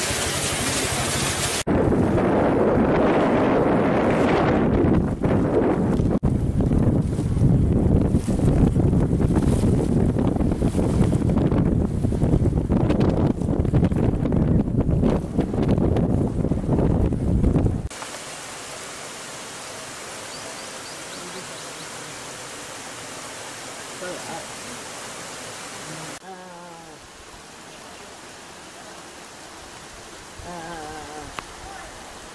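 Wind gusting loudly across the microphone over open water, rumbling and uneven, which cuts off abruptly a little past halfway. A quieter steady hiss of outdoor ambience follows, with a few faint chirps near the end.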